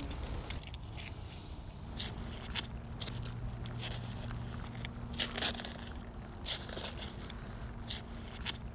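Garden trowel scraping into loose soil and hands pushing dirt over planted bulbs: irregular small scrapes, crunches and crackles of crumbling earth. A faint steady low hum starts about two seconds in.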